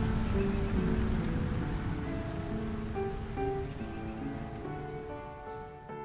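Steady rain falling, gradually fading out, with soft background music of slow, sustained keyboard notes.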